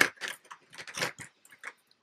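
Hands handling small items: a string of light, irregular clicks and rustles.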